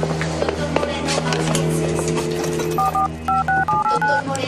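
Telephone keypad tones being dialled: a quick run of about six short two-tone beeps near the end, over background music with sustained chords.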